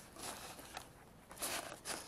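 Handling noise close to the microphone: several short rustles and scrapes, the strongest about one and a half seconds in and again near the end.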